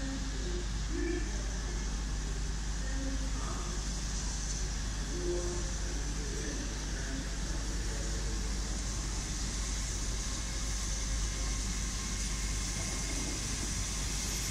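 Railway station platform ambience: a steady low hum and background rumble with faint snatches of distant voices.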